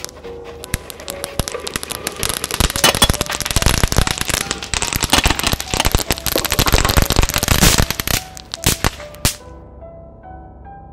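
Dense crackling and popping sound effect, like a string of firecrackers, that builds about a second and a half in, runs thick for several seconds, then stops about eight seconds in, with a few last pops after. Soft music with held notes plays underneath.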